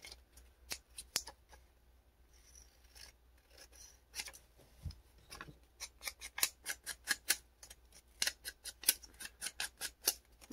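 Small pink-handled craft scissors snipping through a printed book page as a flower picture is cut out. A few separate cuts come first, then quick short snips in the second half.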